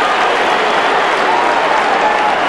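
Large stadium crowd cheering and applauding, a steady dense roar of clapping and voices.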